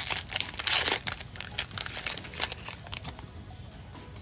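Foil booster-pack wrapper crinkling as it is torn open by hand: a dense run of crackles, loudest in the first second, thinning out after about three seconds.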